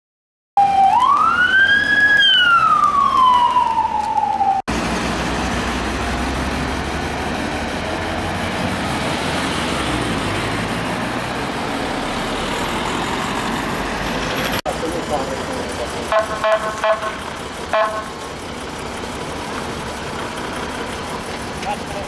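An emergency vehicle siren gives one loud wail, rising and then falling, for about four seconds. After a cut comes a steady rush of road noise, which turns quieter near the end with a few brief voices.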